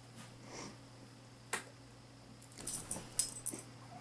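Two salukis play-wrestling: their metal collar tags jingle in a quick flurry between about two and a half and three and a half seconds in, after a single sharp click about a second and a half in.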